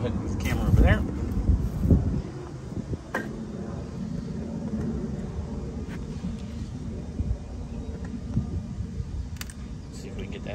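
Handling noise and movement as the camera is picked up and moved during the first couple of seconds, then a steady low outdoor rumble with a few light clicks.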